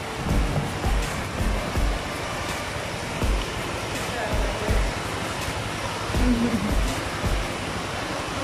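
Steady hiss of rain falling on an open concrete court, with wind buffeting the microphone in irregular low thumps.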